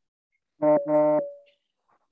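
Two short horn-like toots in quick succession, each holding one steady pitch, the second slightly longer and trailing off with a faint ringing tone.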